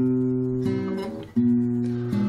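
Acoustic guitar accompaniment between sung lines: a strummed chord rings and fades, and a new chord is struck about a second and a half in.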